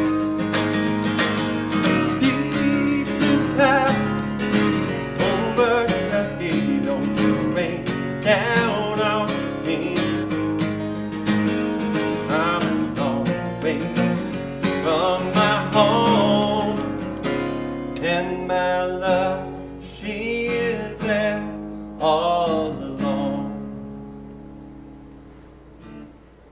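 A man singing a folk song while strumming a steel-string acoustic guitar. Near the end the song closes and the last chord rings out and fades.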